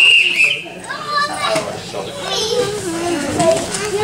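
Children and adults calling out and talking over each other, with a high held cry about the first half-second.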